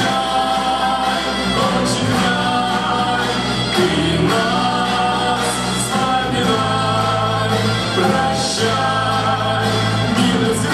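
Music with a choir singing over an instrumental accompaniment with a steady bass line.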